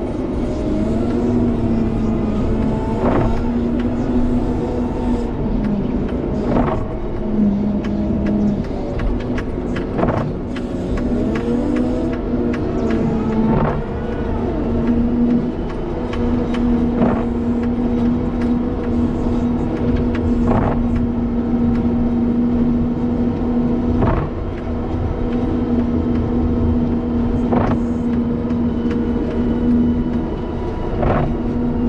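Diesel engine of a wheel loader running under load while it pushes snow with a Metal Pless box pusher, heard from the cab, its pitch rising and falling as it revs. A short click comes about every three and a half seconds.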